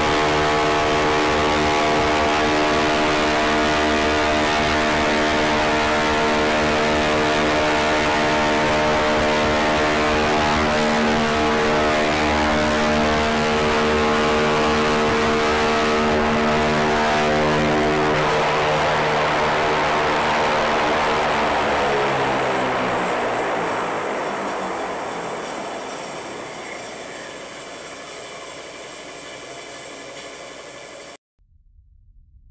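Ingenuity helicopter's coaxial counter-rotating rotors spinning at about 2,300 rpm, a steady many-toned hum. About two-thirds of the way through, after touchdown, the rotors wind down: the pitch falls and the sound fades.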